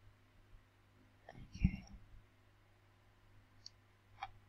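Quiet room with a steady low microphone hum. About a second and a half in comes one brief, soft vocal sound from the narrator, like a murmur or breath, and near the end a faint computer-mouse click as the page is scrolled.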